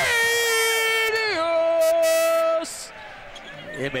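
A man's voice drawing out an excited call on two long held notes. The second note steps lower about a second in, and the call breaks off after about two and a half seconds.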